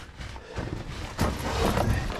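Rustling and scraping of clothing and gear on rock as a caver shifts position in a lava tube, with some handling noise on the microphone. The sound grows louder a little over a second in.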